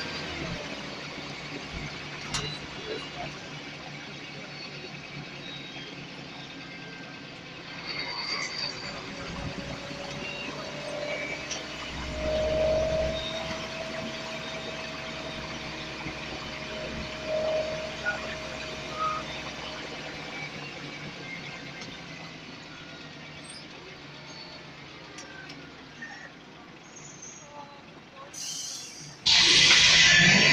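Cabin noise of a Scania L94UB single-deck bus on the move: its nine-litre diesel engine and road noise running steadily. Midway, a faint whine holds for several seconds, drifting slightly in pitch. Just before the end a sudden loud rush of noise starts.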